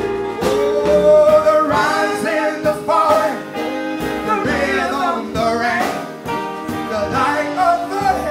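Jazz band playing live, with singing over it: a voice gliding through ornamented, bending phrases above sustained chords, bass and drums.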